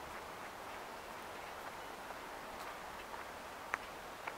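Footsteps on pavement, light clicks about two a second over a steady background hiss, with one sharper click near the end.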